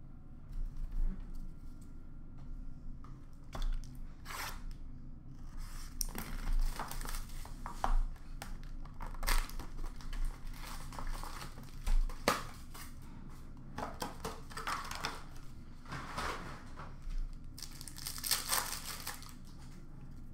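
Trading card packs being torn open by hand: wrappers tearing and crinkling, with rustles and light clicks as the cards are handled, in irregular bursts that bunch up near the end.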